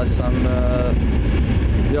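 Steady low rumble of a moving train, heard inside the passenger carriage, under a man's long, held hesitation sound ('aaa').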